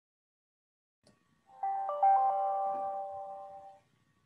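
Short electronic chime: four bell-like notes struck in quick succession about one and a half seconds in, then ringing together and fading away over about two seconds.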